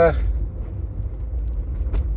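Steady low rumble of a car driving, its engine and road noise heard from inside the cabin.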